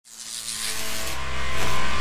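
Logo-intro sound effect: a swelling whoosh that rises steadily in loudness from silence, over a low steady drone.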